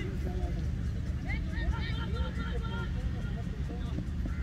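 Faint, distant voices of cricket players calling on the field during a run, over a steady low rumble.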